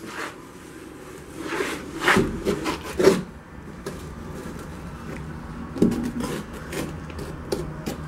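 Steel trowel scraping and scooping cement adhesive mortar out of a tub and spreading it along a board's edge: several scrapes, the sharpest about three seconds in.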